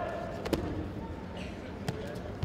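Two sharp slaps of judo fighters hitting the tatami mat during a throw attempt, a loud one about half a second in and a softer one near the end, over the hum of a large sports hall.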